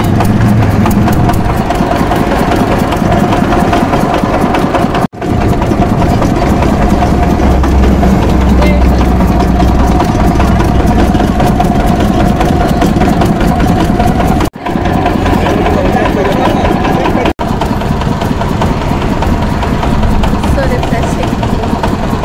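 Sugarcane juice crusher running steadily, its motor and geared rollers driving as cane is fed through to press out the juice. The steady running sound drops out abruptly three times.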